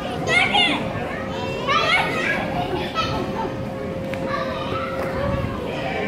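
Children playing in a large indoor play hall, with high-pitched calls and shouts coming every second or so, over a steady faint hum.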